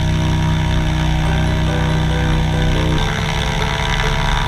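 Light aircraft's piston engine and propeller running at high power in a loud, steady drone. The pitch shifts about three seconds in.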